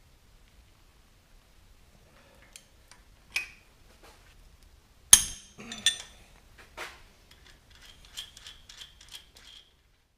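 Steel hand tools clinking on the engine's manifold studs and nuts as a stud is tightened with a ratchet wrench. There is one sharp, ringing clink about five seconds in, a few more clinks after it, then a quick run of light clicks near the end.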